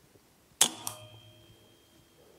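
A single shot from a .22 pre-charged pneumatic air rifle: a sharp crack about half a second in, then a second, smaller crack about a quarter second later as the pellet strikes, with a faint ringing tone dying away over the next second.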